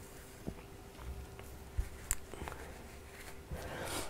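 Faint hand-sewing sounds: a few small ticks and soft rustles as a needle and thread are drawn through a stuffed fabric heart, over a faint steady hum that stops shortly before the end.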